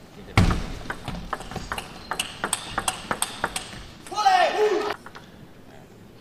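Table tennis rally: the plastic ball clicks sharply off the paddles and the table in quick succession, about four hits a second for some three seconds. It ends with a player's loud shout, falling in pitch, as the point is won.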